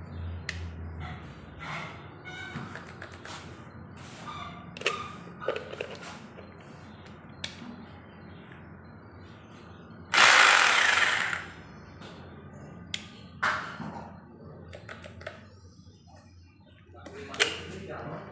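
Corded rotary hammer drill run briefly on a newly wired socket to test it: one loud burst of about a second and a half near the middle, with shorter bursts later on. Between the runs there are small handling clicks as the plug and the tool are moved.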